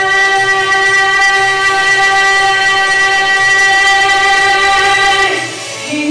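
A woman singing one long held note into a microphone for about five seconds; it fades out, and a new, lower note starts just at the end.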